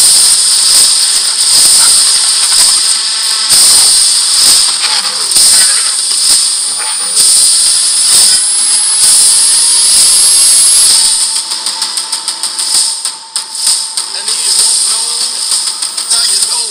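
Action movie trailer soundtrack played back loud: a dense, hissy battle sequence with a thin high whistle climbing slowly through the middle. It drops to a quieter passage about eleven seconds in.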